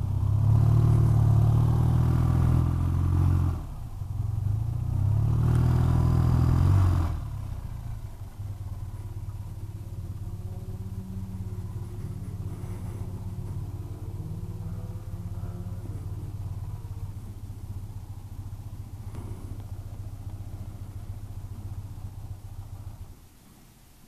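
BMW airhead air-cooled flat-twin motorcycle engine pulling away in two bursts, with a short dip for a gear change about 3.5 s in. It then runs steadily at low revs and stops about a second before the end.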